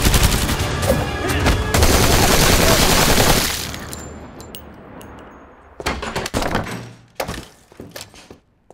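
Loud trailer music and action effects for the first three and a half seconds, fading away, then a few short bursts of gunfire with sharp cracks near the end.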